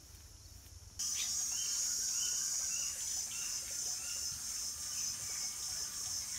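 A steady, high-pitched insect drone with short bird chirps over it, starting abruptly about a second in; the first second is quiet outdoor ambience.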